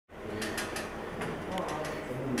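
Faint voices in the background, with a few light clicks and knocks.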